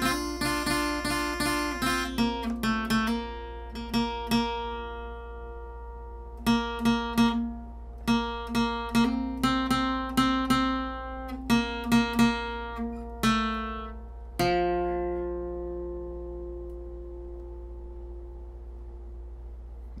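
Acoustic guitar, capoed at the first fret, playing a requinto-style single-note lead: quick picked runs and repeated notes. About fourteen seconds in it stops on a last note that is left ringing and slowly fades.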